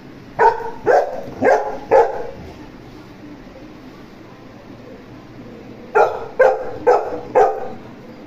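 A dog barking in two runs of four quick barks, the first starting just after the beginning and the second about six seconds in.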